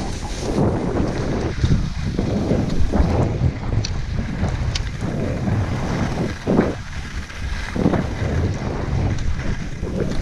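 Wind buffeting the microphone of a body-worn camera during a fast downhill ski run, with skis hissing and scraping over groomed snow. The rumble swells and eases every second or so as the skis turn.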